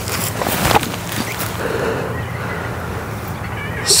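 Steady wind rushing over the microphone, with a brief sharper burst a little under a second in as the disc is thrown.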